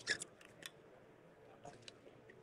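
A drinking bottle being handled and opened: a few faint, short, crackly clicks, the loudest cluster at the start and a couple more near the end.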